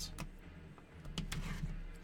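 Hands handling a shrink-wrapped box of trading cards: a few faint, scattered crinkles and taps of the plastic wrap over a low steady hum.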